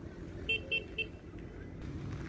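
A vehicle horn beeping three times in quick succession, short high-pitched toots a quarter second apart, about half a second in, over a steady low rumble of road traffic.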